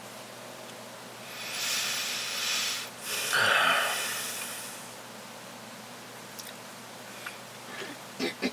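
A man breathing out heavily through his nose: a long hissing exhale, then a louder snort-like nasal breath about three seconds in. A faint steady low hum lies underneath.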